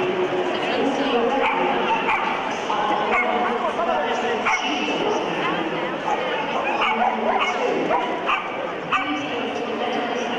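Dogs yipping and whining over a steady hubbub of crowd chatter, with many short high calls throughout.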